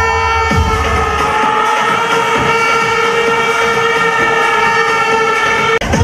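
A sustained chord held for almost six seconds in the video's background music, its low bass fading out about a second in; it cuts off abruptly near the end as the music changes.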